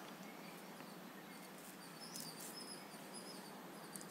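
Quiet room tone with a few faint, short high chirps in the middle.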